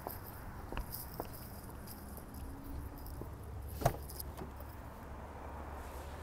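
Keys jangling and a few light clicks, then one sharper click about four seconds in as the minivan's driver door is opened.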